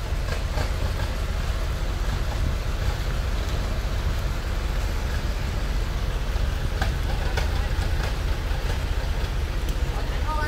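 Small truck's engine running with a steady low rumble as the truck reverses slowly, with a few faint knocks about seven seconds in.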